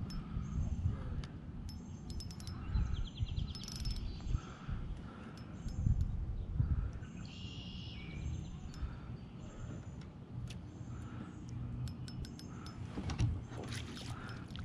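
Small birds chirping in short, high notes repeated every second or so, with a brief trill about three and a half seconds in, over a low, uneven rumble.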